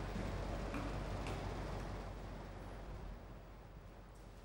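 Quiet room tone: a low steady hum and hiss that fall away about three seconds in, with two faint clicks about a second in.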